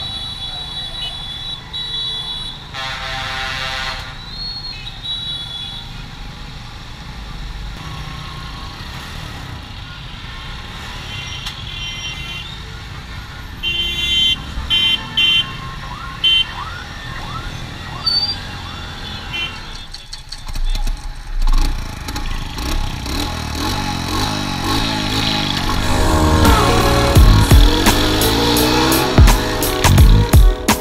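Busy street traffic of motorbikes and cars, engines running, with horns beeping several times; music comes in near the end.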